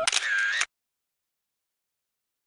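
Camera shutter sound from the photo booth as the picture is taken, a short burst of about half a second right at the start.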